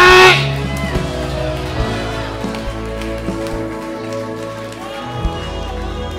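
Soft live band music: sustained keyboard chords over low bass notes that change every second or so. A man's loud shouted voice cuts off just after the start.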